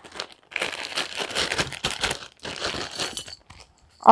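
Clear plastic pouch crinkling as it is handled, a run of crackly rustles lasting about three seconds.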